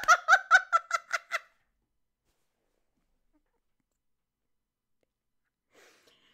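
A woman laughing hard, a quick string of about ten 'ha' pulses that ends about a second and a half in.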